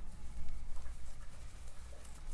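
Soft scratching and rustling of a crochet hook drawing yarn through stitches, over a steady low hum.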